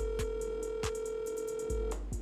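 Telephone ringback tone heard through the handset: one steady two-second ring that starts and stops abruptly, showing that the dialled number is ringing and has not yet been answered. Background hip-hop music with a beat plays under it.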